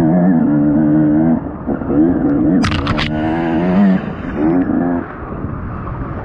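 Off-road race machine's engine heard from the rider's helmet, revving up and falling back over and over as the throttle is worked along a wooded trail. A quick cluster of sharp clatters comes about halfway through.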